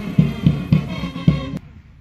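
Music with heavy drum beats, about three or four a second, over held notes; it cuts out about a second and a half in.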